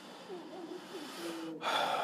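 Faint murmured voices, then a sharp intake of breath about a second and a half in.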